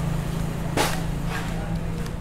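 A steady low engine hum, like a motor vehicle running nearby, with one short swish about a second in.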